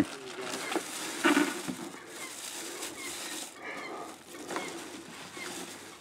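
Rustling of tissue paper and a cardboard boot box as a pair of work boots is unpacked, with faint bird calls in the background.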